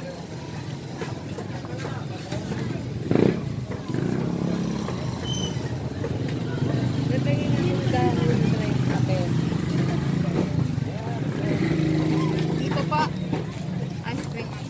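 A motor engine running steadily, louder from about four seconds in, under indistinct voices, with one sharp knock about three seconds in.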